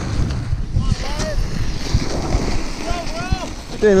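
Strong wind buffeting the microphone, a rough low rumble throughout, with faint voices calling out a couple of times.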